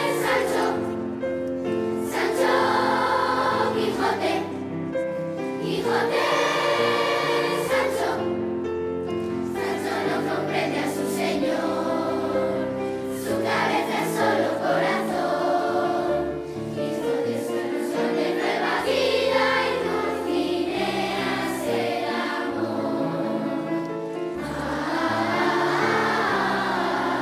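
A large choir of children's voices singing together, holding sustained notes over a steady low accompaniment.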